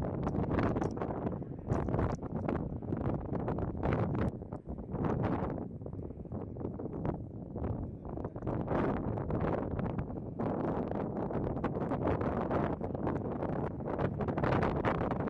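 Wind buffeting the microphone in uneven gusts, a rough low rumble that swells and drops every second or so.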